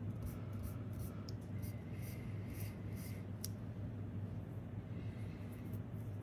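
Kneadable eraser rubbed in quick short strokes on graphite-shaded drawing paper, lifting graphite to make a highlight in the hair. The strokes thin out after about three and a half seconds, over a steady low hum.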